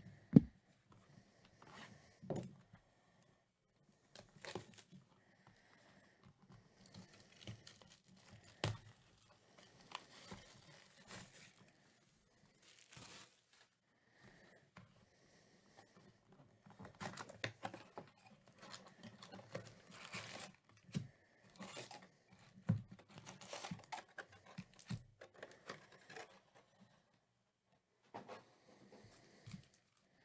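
A sealed cardboard hobby box of trading cards being torn open by hand: wrapping and cardboard tearing and crinkling, with scattered knocks and scrapes. It comes in short bursts, busiest in the second half, as the foil packs are taken out.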